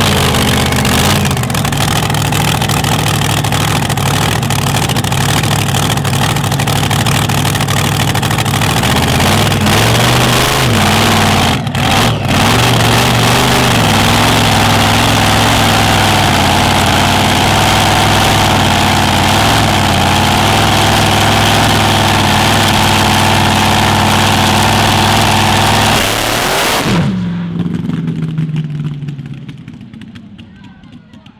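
Supercharged engine of a mud dragster running loud and lumpy, with a few short throttle blips that swing the pitch up and down. Near the end the sound drops away sharply and the engine note falls off.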